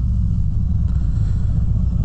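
2017 Harley-Davidson Road King's Milwaukee-Eight V-twin engine running with a steady low rumble at low road speed.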